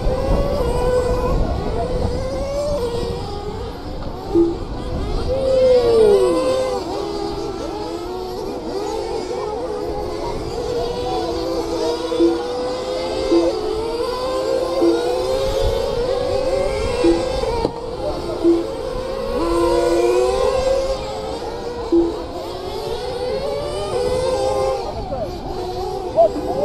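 Several radio-controlled model race cars running laps together, their high-pitched motors overlapping and repeatedly rising and falling in pitch as they speed up and slow down around the track.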